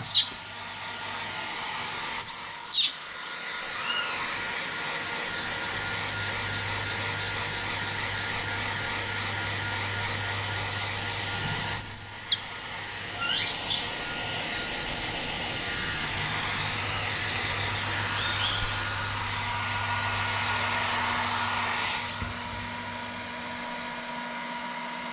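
A small handheld hair dryer blowing steadily on a baby monkey's damp fur after a bath, switched off near the end. Over it a baby monkey gives about four short, high-pitched squeals that rise and fall in pitch.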